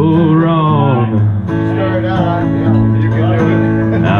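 Acoustic guitar strummed with a man singing along; his voice bends in pitch over the first second and a half, then a note is held steady.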